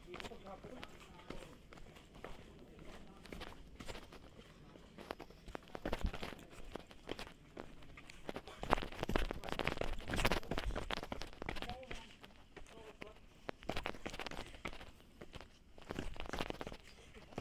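Quick, irregular footsteps running on a rocky dirt trail, crunching and scuffing, heavier around the middle.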